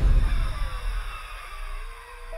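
Horror trailer score after its loud climax cuts off: a low rumble and a thin tone that slides down in pitch, fading away.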